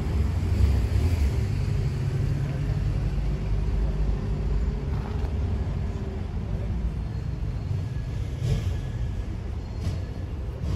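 A car engine running, heard as a low steady rumble with a faint steady hum in it for a few seconds.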